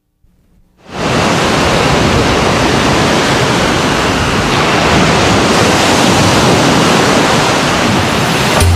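Ocean surf washing onto a sandy beach: a steady rush of waves that rises out of silence about a second in.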